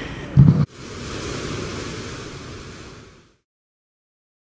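A short low thump, then a steady hiss-like background noise that fades out about three seconds in.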